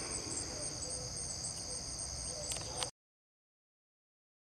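Steady chorus of crickets, a high continuous chirring, cutting off suddenly about three seconds in.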